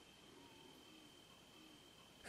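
Near silence: faint room tone with a thin, steady high-pitched tone running underneath.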